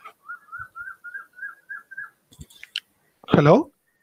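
A quick run of about nine short, high whistled chirps, around five a second, lasting about two seconds, followed by a few faint clicks.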